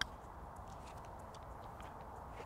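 A single short click of a golf putter striking the ball, followed by a faint outdoor hush.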